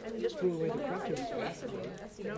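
Indistinct chatter of several people talking at once, with overlapping voices and no single clear speaker.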